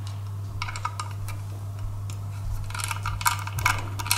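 Small bit screwdriver turning screws out of an opened hard disk drive's metal chassis: light, irregular clicking and ticking of the bit in the screw heads, in two bursts, about half a second in and near the end. A steady low hum runs underneath.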